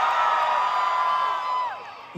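Concert crowd cheering, many voices holding a high shout together that falls away near the end.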